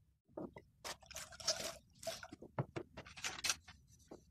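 A string of short, irregular scrapes, rustles and clicks from things being handled at a window, close to the microphone.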